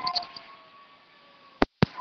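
Two-way radio traffic between transmissions: static hiss trailing off with a faint steady tone under it, then two sharp clicks as the radio is keyed up again near the end, followed by a short steady tone.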